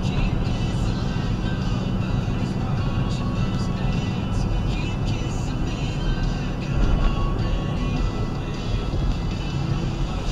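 Steady road and engine noise heard from inside a car cruising at about 38 mph, with music playing faintly underneath.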